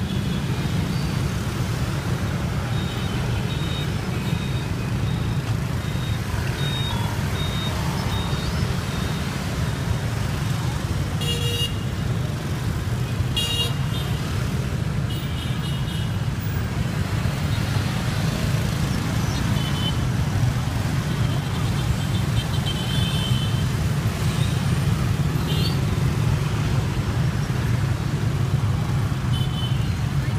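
Dense motorbike and scooter traffic passing close by: a steady rumble of many small engines, with short high horn beeps scattered throughout and several in the middle.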